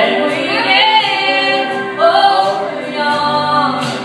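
Women's voices singing a gospel song together in harmony, the notes held and sliding between phrases.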